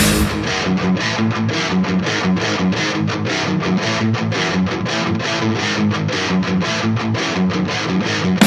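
Instrumental passage of a heavy metal song with no vocals. Electric guitar picks a repeating figure in even strokes, about four a second, over low bass notes.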